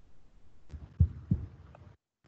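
Quiet background with a faint click, then two soft low thumps about a second in, a third of a second apart.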